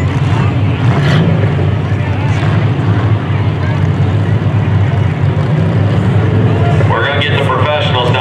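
Stock front-wheel-drive bump'n'run cars' engines running in a steady low rumble, with a man's voice coming in about a second before the end.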